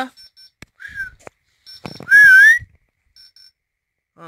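A person whistling to call a dog: a short whistle about a second in, then a loud whistle rising in pitch about two seconds in.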